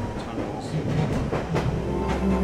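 London Underground Central line train running through a tunnel, heard from inside the carriage: a steady rumble of wheels and motors with a few sharp clicks from the track.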